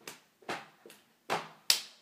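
Five sharp smacks, about two a second, from a child doing jumping jacks; the third is weaker and the last is the loudest.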